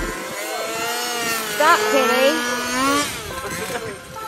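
RC race buggy motors whining as the cars run the track, the pitch sliding up and down with throttle and a couple of quick rev blips near the middle. The sound fades after about three seconds as the cars move off.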